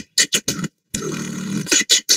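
Human beatboxing: a run of quick, sharp mouth-percussion hits, a short break, then a held buzzing bass note about a second in, followed by more quick percussive hits near the end.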